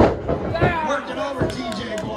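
A wrestler's body hits the ring mat with a loud slam right at the start, followed by people's voices calling out.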